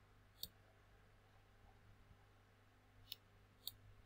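Three short computer mouse clicks against near silence and a low steady hum: one about half a second in, two close together near the end.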